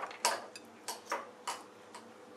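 Cat chewing chunks of melon, sharp wet crunching clicks about two to three a second at uneven spacing.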